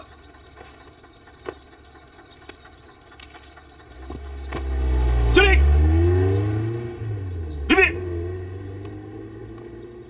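Military jeep engine pulling up, its pitch rising through the gears, loudest about five to six seconds in and then fading as it slows. Two brief shouts sound over it.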